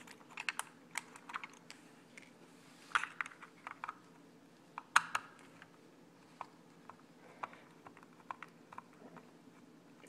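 Irregular small clicks and ticks of a Phillips screwdriver and hands working screws out of a Traxxas Rustler's plastic chassis, in clusters with the sharpest click about five seconds in.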